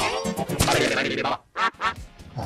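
A heavily effects-processed voice, put through vocoder and formant plugins into warbling, non-speech-like squawks. It ends with two short clipped bursts near the end.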